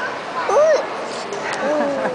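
A toddler's wordless vocal sounds: a short squeal that rises and falls about half a second in, then a longer call that slides slowly down in pitch near the end.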